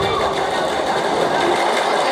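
Audience noise in a hall, a dense even clatter of clapping with voices mixed in, once the dance music has stopped.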